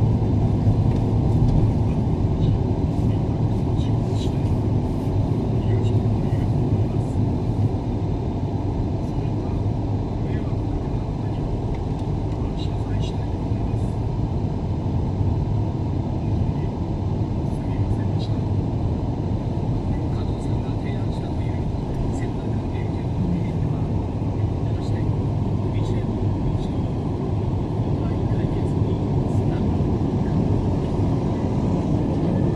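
Steady road noise heard inside a moving car at expressway speed: a low rumble of tyres and engine.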